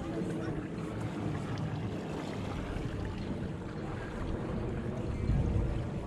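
Steady low rumble of wind on the microphone, growing louder about five seconds in, with faint voices in the background.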